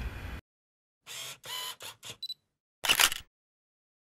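Camera sound effect: a quick run of four short camera mechanism sounds about a second in, with a brief high beep at the end of the run, then one louder shutter click near the end.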